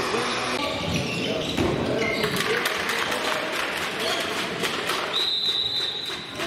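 A handball bouncing on a sports-hall floor among players' voices, echoing in the hall. Near the end a referee's whistle is blown once for about a second.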